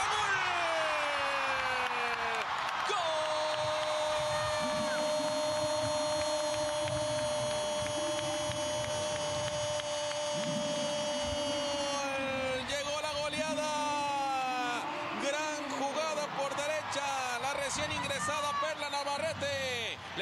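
A Spanish-language TV football commentator's goal call. A falling shout comes first, then one long note held steady for about nine seconds, then excited fast shouting.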